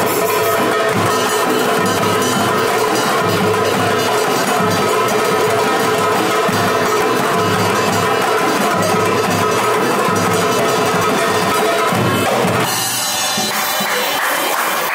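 A marawis ensemble plays a fast, dense rhythm on hajir bass drums, marwas hand drums and darbuka, with the standing players clapping in time. The playing breaks off about a second before the end.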